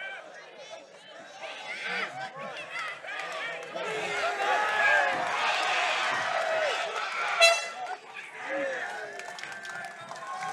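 Fight-night crowd shouting and cheering, many voices overlapping and swelling through the middle. A short horn blast about seven and a half seconds in marks the end of the round.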